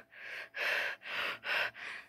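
A person breathing hard and fast behind a mask: about five noisy breaths in quick succession, with no voice in them.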